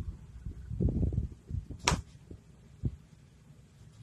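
Soft, low, muffled thumps and rustling, with a sharp click about two seconds in and a smaller knock near three seconds.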